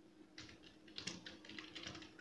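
Computer keyboard keystrokes, a quick run of faint clicks as a command is typed.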